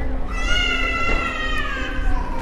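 A child's long, high-pitched wail, held for nearly two seconds and slowly falling in pitch, over a steady low hum and street noise.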